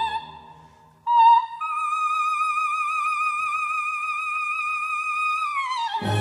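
Operatic soprano singing unaccompanied: a note dies away, then about a second in she attacks a very high note, steps up to an even higher one and holds it steadily for about four seconds before gliding down near the end.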